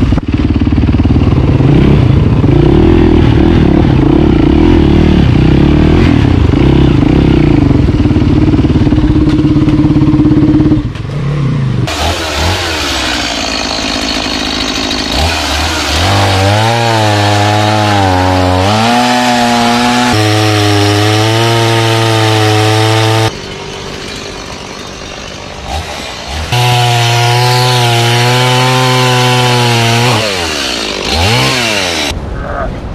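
A dirt bike's engine runs as it is ridden slowly along a rough trail. About a third of the way through it gives way to a two-stroke chainsaw cutting through a fallen tree trunk, its pitch wavering as it bogs and revs under load. It drops to a quieter idle for a few seconds near the end, then revs up again to cut.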